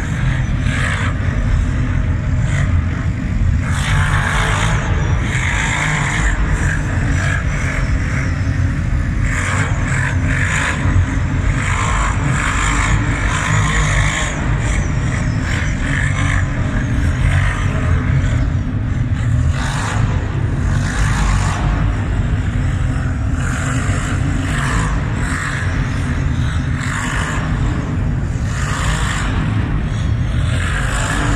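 Quad bike (ATV) engines running and revving as the quads circle on sand inside a concrete cooling tower. A steady low engine rumble runs underneath, with repeated swells of louder, rougher engine noise as the throttle is opened.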